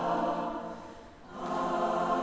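Large mixed choir singing live: a held chord fades away about half a second in, and a new sustained chord comes in about a second and a half in.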